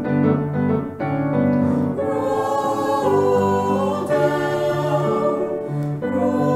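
Two women's voices singing a church anthem as a duet, with held notes and vibrato, accompanied by piano.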